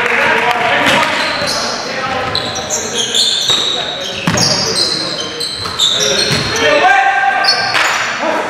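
A basketball bouncing on a hardwood gym floor during live play, with players' voices and repeated short, high squeaks.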